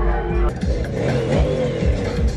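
A classic Chevrolet pickup's engine revving up and falling back once as the truck drives past, heard over music.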